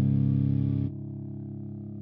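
A distorted electric guitar chord held and ringing. About a second in it drops sharply in level and loses its upper overtones, leaving a quieter low sustained tone.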